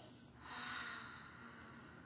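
A soft, faint breath close to the microphone, swelling about half a second in and fading within a second.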